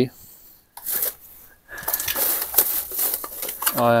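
Plastic rubbish bags and paper rustling and crinkling as a gloved hand rummages through a bin of household rubbish, with small clicks of objects being shifted.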